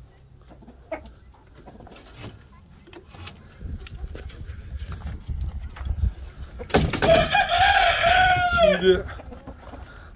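A rooster crowing once, about seven seconds in: one loud call of about two seconds that holds its pitch and then falls away at the end.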